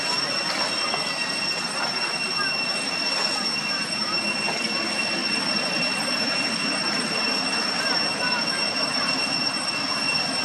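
Steady, high-pitched insect drone that holds one unbroken pitch over a dense background hiss, with faint short squeaks scattered through it.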